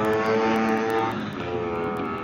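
Modified two-stroke Vespa racing scooter's engine passing at high revs. Its steady note drops in pitch and fades about a second in as it goes by.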